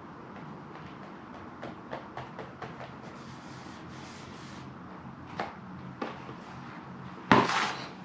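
Hands pressing and rubbing a sheet of paper onto a plate of shaving cream, with faint rustles and small ticks and a couple of sharper clicks. Near the end there is a brief louder noise as the paper is peeled up off the foam.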